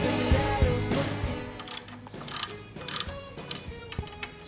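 Ratchet wrench clicking in about five short strokes, roughly every half second, as a bolt is turned at the crash bar's lower mount. Background music fades out during the first second and a half.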